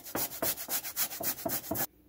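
Lemon peel being grated on a fine handheld rasp zester: quick, even scraping strokes, about eight a second, that stop abruptly just before the end.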